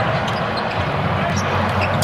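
A basketball being dribbled on a hardwood court, its bounces heard faintly over a steady background noise.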